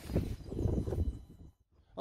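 Low outdoor background noise with faint irregular knocks, fading out after about a second and a half into a brief dead silence, as at an edit cut.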